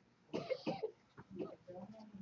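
A man coughing twice in quick succession about half a second in, followed by faint throat sounds.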